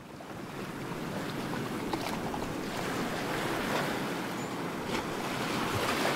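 Steady rushing of small waves breaking on the beach, with wind.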